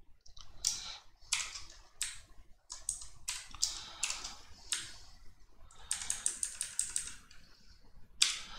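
Computer keyboard typing: irregular keystrokes, with a quick run of key presses about six seconds in.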